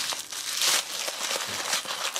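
A crinkly wrapper being pulled open and crumpled by hand: a continuous run of crackles, loudest about half a second in.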